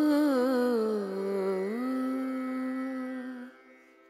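A single voice humming a wavering tune with vibrato, dipping lower about a second in, then holding one long steady note that fades out near the end.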